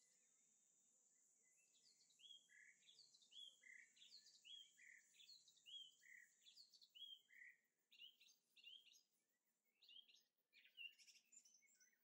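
Near silence with faint, quick high chirps of a bird calling in the background, starting about two seconds in and repeating several times a second.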